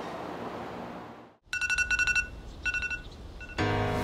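An electronic alarm beeping in three short bursts of a rapidly pulsing tone, the first and longest about half a second. Music starts near the end.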